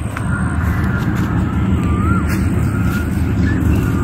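Wind buffeting the microphone as a steady, loud low rumble, with a few faint thin whistles over it.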